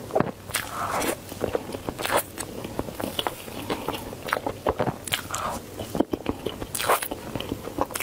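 Close-miked eating sounds of a frozen chocolate dessert: bites, wet chewing and lip smacks with many sharp little clicks throughout.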